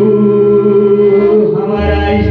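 Live Pahari folk song played loud through a PA system: a male singer holds one long note over the band's backing, and the bass drops out briefly near the end.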